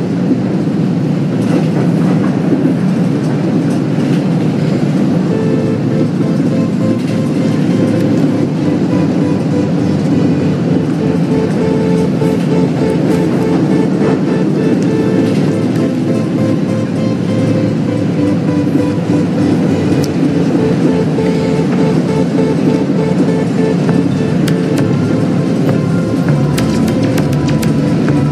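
Metro train carriage running, a steady rumble of the moving train, with soundtrack music playing over it.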